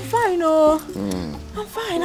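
A woman's voice in a long, drawn-out exclamation, its pitch gliding and falling, followed by shorter voiced sounds, with soft background music underneath.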